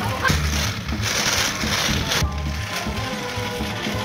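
Background music with a steady bass beat, and for about two seconds near the start a rough, scraping noise over it that stops abruptly.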